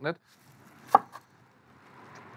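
A fried, batter-coated chicken nugget set down on a wooden cutting board: one short crisp knock about a second in, then a smaller one just after.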